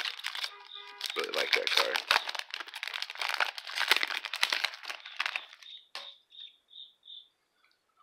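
Foil booster-pack wrapper being crinkled and torn open by hand, a dense crackling rustle for about five and a half seconds, with a short tone about half a second in. Then a sharp click and a few faint, short, high tones before it goes quiet.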